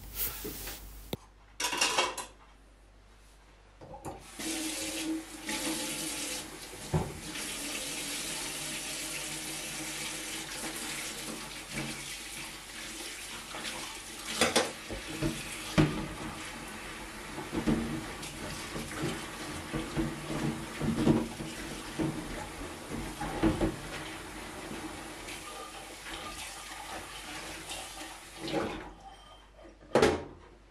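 Kitchen tap running into a stainless steel sink while dishes are rinsed, with the knocks and clinks of crockery against the sink. The water comes on about four seconds in and shuts off near the end.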